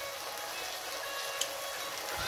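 Pot of eru simmering on the hob, a steady sizzling hiss, with one light tick about one and a half seconds in.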